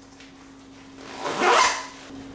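A single rasp from a fastening on a pair of waterproof overtrousers being pulled open by hand, swelling and dying away about a second and a half in.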